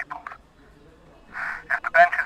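Voices in a telephone conversation, thin as if heard down a phone line, with a pause of about a second in the middle before talk starts again.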